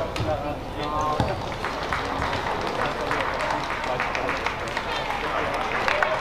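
A racket strikes a shuttlecock at the start and a voice gives a short shout about a second in, then hall spectators applaud the end of the badminton rally, a dense patter of clapping.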